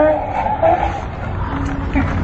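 Men laughing hard in uneven, wordless vocal bursts.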